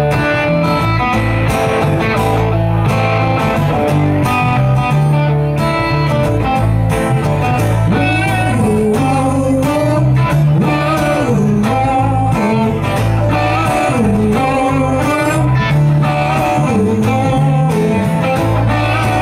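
Live band playing an instrumental passage of a blues-rock song: acoustic guitar and electric bass, with a melodic line that bends up and down in pitch over a steady bass.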